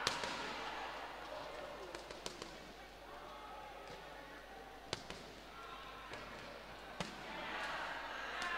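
Amateur boxing bout: scattered sharp smacks and thuds from the boxers, about six in all, the loudest right at the start, over voices in the hall.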